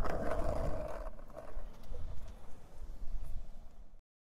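Skateboard wheels rolling over asphalt, a low rumble with a few light clacks, fading out near the end.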